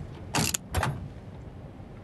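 A steel safe's handle being turned and its door unlatched and pulled open: a click, then two short, loud metallic scraping clunks about half a second apart.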